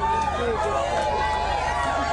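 Many voices calling and shouting over one another, a press pack of photographers calling out to the band, over a steady low hum.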